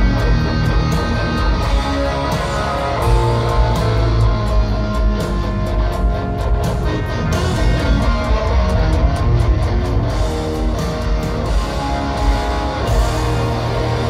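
Live electric guitar solo played on a Les Paul-style guitar through a stadium PA, with held notes and melodic runs over bass and drums.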